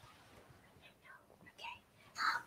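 Near silence, with a faint whisper about a second and a half in.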